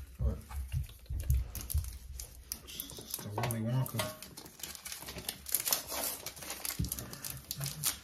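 Hershey's chocolate-bar wrappers crinkling as the bars are unwrapped and handled, with small irregular crackles throughout.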